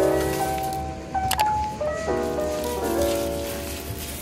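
Background music: soft chords of held notes, changing about every second. A single sharp click sounds a little over a second in.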